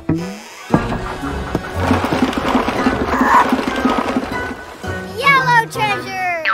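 Cartoon soundtrack: background music under a busy rattling sound effect with a fast, even pulse, then a high voice sliding up and down in pitch near the end.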